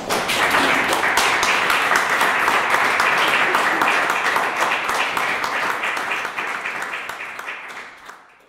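Audience applauding, beginning abruptly and slowly dying away over the last couple of seconds.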